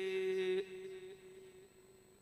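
A man's voice holding one long, steady hummed note into a microphone that breaks off about half a second in. A faint ring at the same pitch lingers and fades away over the following second.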